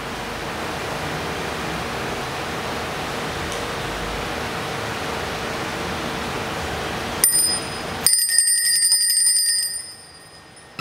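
Steady room hiss with a faint hum, then about seven seconds in a small bell starts ringing rapidly. The ringing is loudest from about eight seconds in and stops just before the end.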